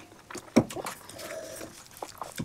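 Close-up mouth sounds of people eating and drinking: a loud gulp about half a second in, then a brief hum of about half a second from the throat, over small wet clicks of chewing.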